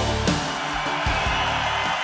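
Rock-style band music with electric guitar, bass and drums.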